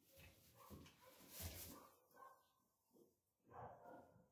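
Faint, irregular rustling and snuffling of a dog nosing and pawing through hay bedding.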